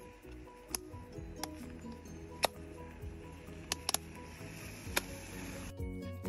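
Background music with a light melody, over about six sharp clicks of plastic ski boot buckles being snapped shut, two of them in quick succession a little before the four-second mark. The music changes to a new tune near the end.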